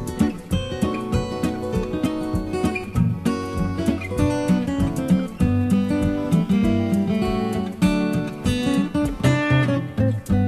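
Background music with no singing: acoustic guitar strummed and picked.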